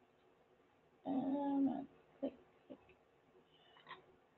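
A woman's drawn-out hesitant "uhh", then a short "like", with quiet room tone around them.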